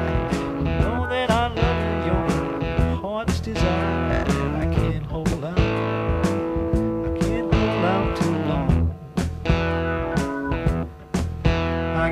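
Overdriven black Fender Stratocaster played through a Fender Champ amp: a blues guitar solo with bent, wavering notes, over a steady beat and bass line.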